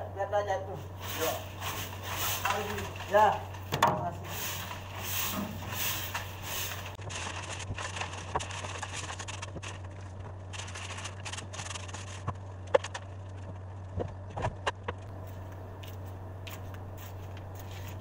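Broom sweeping loose debris across the steel floor of a truck's cargo bed: a run of brisk, scratchy strokes for several seconds, then fewer, scattered scrapes and sharp taps, over a steady low hum.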